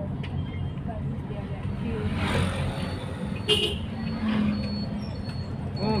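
Car cabin noise while driving: a steady low engine and road rumble, with a brief sharp sound about three and a half seconds in.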